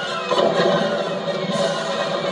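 Dramatic film score with a choir singing over the orchestra.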